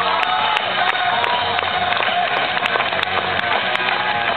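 Live music on an electronic keyboard, with a sharp regular beat, and crowd noise.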